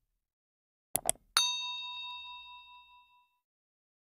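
Subscribe-button animation sound effect: two quick clicks, then a single bell ding that rings out and fades over about two seconds.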